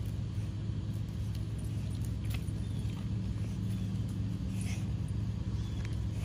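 A steady low mechanical hum, as of a running motor, with a few faint light clicks about two and a half and five seconds in.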